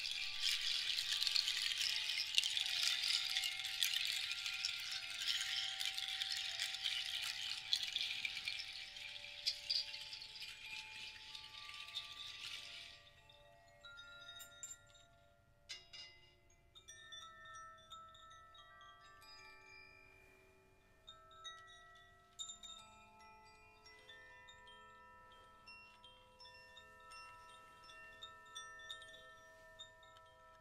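A seed-pod rattle shaken in a dense, steady rustle over the ringing of handheld cord-hung tube chimes; the rattle stops about 13 seconds in. After that the tube chimes ring on alone in sparse clusters of overlapping, sustained tones.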